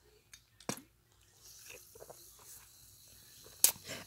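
A person drinking from a glass: two small clicks, then a faint hiss, then a sharper click near the end.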